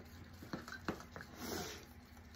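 Faint stirring of a thick mix of caulk, paint and Mod Podge in a small cup, with a few light clicks and scrapes of the stirrer against the cup.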